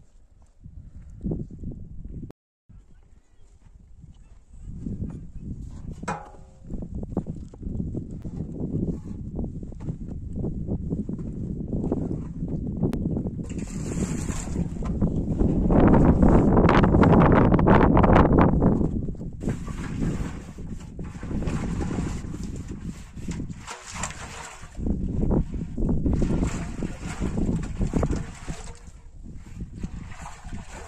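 Wind buffeting the microphone outdoors, a low rumble that comes and goes in gusts, loudest in a long gust around the middle. Light knocks of a large metal pot being handled on the ground come through it.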